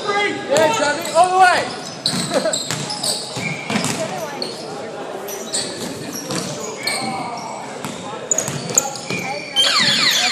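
Basketball game in a large gym hall: the ball bouncing on the hardwood court, short high sneaker squeaks, and players' voices calling out, loudest in the first second or two.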